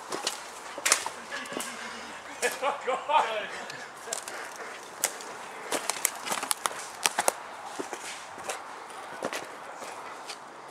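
Quick footsteps through woodland undergrowth, with many sharp snaps and crunches of twigs and leaf litter and knocks of a handheld camera. A person's voice is heard briefly about two and a half seconds in.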